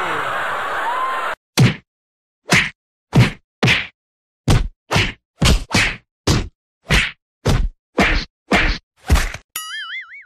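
Dubbed punch sound effects: a rapid series of about fifteen sharp whacks, roughly two a second, with dead silence between them. A short wobbling cartoon-style tone comes near the end.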